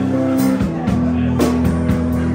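Live rock band playing: electric guitar chords held over a drum beat, with drum and cymbal hits coming at a steady pulse.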